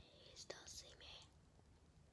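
Near silence, with a few faint breathy rustles in the first second.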